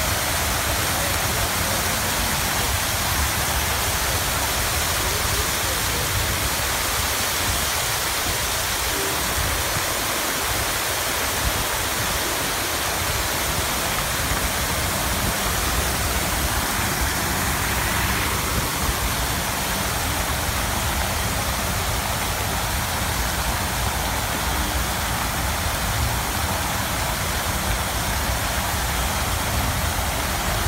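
Many fountain jets spraying and splashing back into a pool: a steady rushing hiss of falling water.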